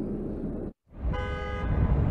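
Car horn honking once, a short single-tone toot of about half a second, over steady city traffic noise. Just before it the background drops out abruptly for a moment.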